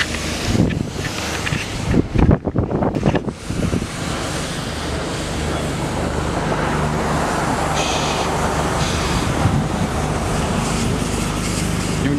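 Steady rushing hiss over a low mechanical hum, after a few seconds of bumps and rustling.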